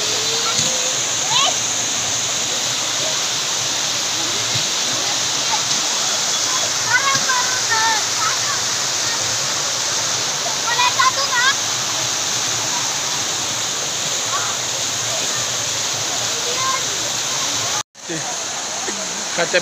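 Monsoon waterfall cascading over rock: a steady, unbroken rush of falling water, with a brief break near the end.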